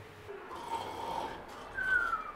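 A person snoring: a soft rasping breath, then a thin falling whistle near the end.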